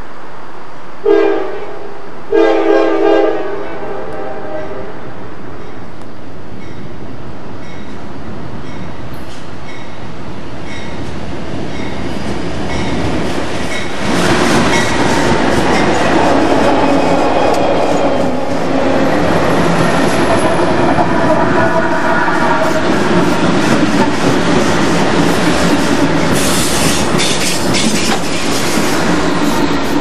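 Norfolk Southern diesel locomotive's air horn sounding a short blast, then a longer one about a second later, as the freight train approaches. From about fourteen seconds in the locomotives pass close by with their diesel engines running and wheels clacking over the rail joints, and the train rolls on past.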